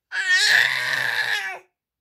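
A baby's single high-pitched squeal, about a second and a half long, wavering in pitch at first and then held.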